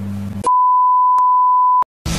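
A single steady, high-pitched electronic beep, one pure tone on dead silence, starts about half a second in, lasts about a second and a half, and cuts off suddenly. Before it, a low steady hum.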